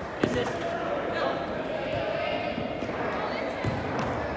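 A soccer ball being kicked and thudding on an indoor artificial-turf pitch: one sharp impact about a quarter second in and another near the end. Players call out across the echoing hall.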